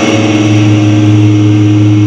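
Electric guitar music: one low note or chord held and sustained, steady and loud.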